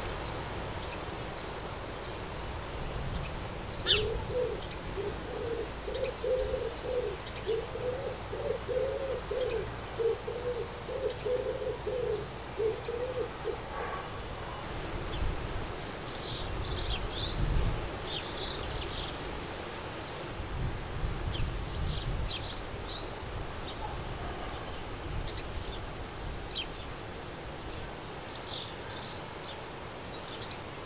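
A pigeon cooing: a run of about ten low, evenly spaced notes, roughly one a second, through the first half. Small songbirds chirp in short, high twittering clusters in the second half, with a low rumble beneath them.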